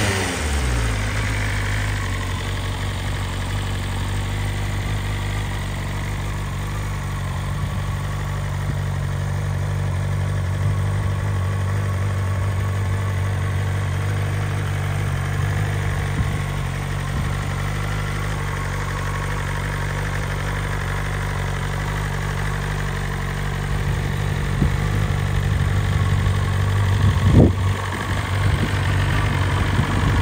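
BMW S1000RR's inline-four engine idling steadily in neutral, with one short blip of the throttle about 27 seconds in.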